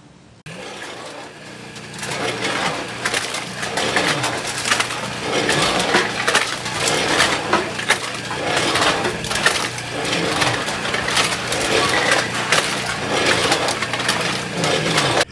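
Empty aluminium drink cans clattering and rattling continuously as they are pushed by hand into a metal chute, a dense stream of tinny knocks over a low steady hum. It starts about half a second in and grows louder after a couple of seconds.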